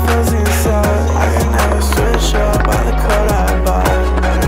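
Music with a steady bass line, over a skateboard rolling and clacking on concrete.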